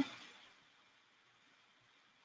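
Near silence: faint steady room-tone hiss, with the tail of a woman's spoken word fading out in the first instant.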